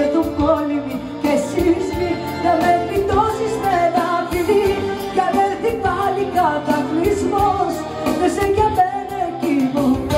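A woman singing a Greek song into a microphone with a live band of bouzouki and keyboard, over a steady beat.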